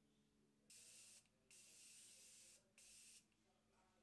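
Makeup setting spray (Morphe Continuous Setting Spray) misted three times, faint hissing sprays with the middle one about a second long.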